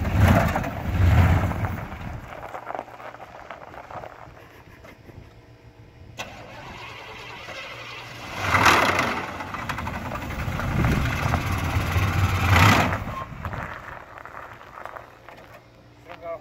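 Crash-damaged GMC pickup's engine running as the truck is driven, revving in bursts: one right at the start, then a longer stretch from about halfway through, with quieter running between.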